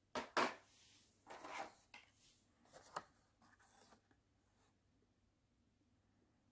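Carded Hot Wheels car packaging being handled: the plastic blister and cardboard backing rustle and click in a few short bursts over the first four seconds, loudest near the start.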